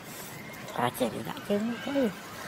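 A few short, pitched vocal calls in quick succession, starting just under a second in.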